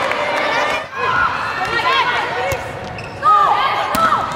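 Indoor volleyball game sound: a steady din of crowd voices and shouts, with several short high squeaks of shoes on the court and a few sharp hits of the ball; the loudest moment comes a little past three seconds in.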